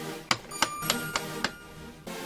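Five sharp metallic clicks in quick succession, about three a second, each with a short ringing tone.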